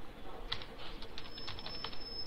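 Typing on a computer keyboard: a short, irregular run of keystrokes as a word is typed.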